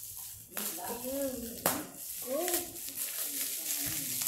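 Plastic bubble wrap crinkling and rustling as it is pulled off a boxed set of books, with two sharper crackles in the first two seconds.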